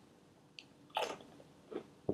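A crunchy Lorenz Crunchips potato chip bitten with a sharp crunch about a second in, followed by a smaller crunch of chewing.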